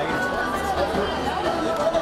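Crowd chatter: many people talking at once, their voices overlapping into a steady babble.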